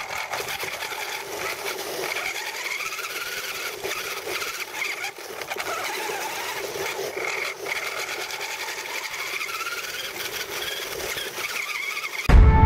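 Remote-control car's electric motor and gears whining, the pitch rising and falling again and again as the car speeds up and slows, with a steady whirring noise underneath, heard up close from a camera mounted on the car.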